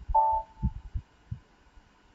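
A short electronic alert tone from the computer, a chord of a few pitches that fades within half a second, sounding as the program is activated. A few soft low thumps follow.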